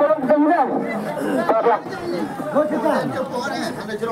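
Several people talking over each other in a crowd.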